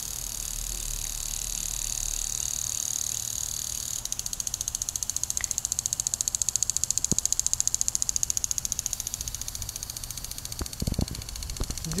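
Lawn sprinkler head spraying water: a steady high hiss that turns into a rapid, even pulsing about four seconds in. A few low thumps come near the end.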